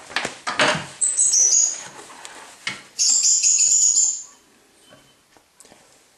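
Fabric gas-mask carrying bag being handled: rustling, then two scratchy, high-pitched rubbing sounds, one about a second in and a longer one about three seconds in, before it goes faint.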